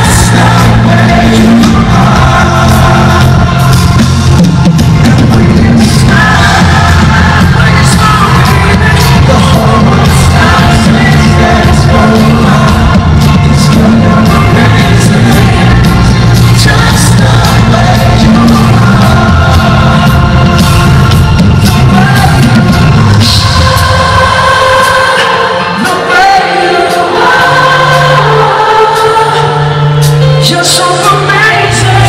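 Live pop band and male lead singer performing a ballad's chorus, recorded from the audience in a large arena. The music is loud throughout; the bass drops away briefly about four-fifths of the way in, then returns.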